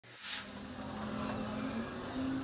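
Steady low machinery hum under a wash of background noise, the working sound of a fishing boat unloading crates of snow crab by hoist. A brief hiss comes just after the start.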